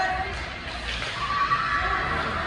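Voices calling out across an ice hockey rink, with one high drawn-out shout held from about halfway through, over the arena's steady low rumble.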